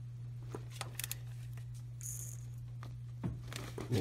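A few faint clicks and light metal knocks from a ratchet working on a camshaft phaser bolt as it is angle-tightened, over a steady low hum.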